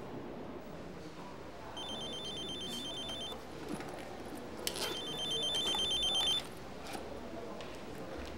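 Mobile flip phone ringing: an electronic trilling ringtone sounding twice, each ring about a second and a half long. It is an incoming call, answered just after the second ring.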